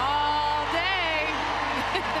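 Basketball play-by-play commentary over background music, with crowd noise underneath.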